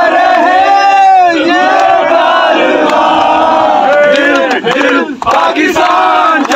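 A group of men loudly singing a chanted chorus together, with hand clapping near the end.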